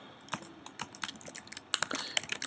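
Typing on a computer keyboard: irregular key clicks, with a quick run of keystrokes near the end.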